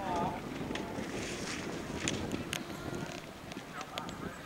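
Indistinct voices of people outdoors, one wavering call near the start, over wind buffeting the microphone, with a few sharp clicks scattered through.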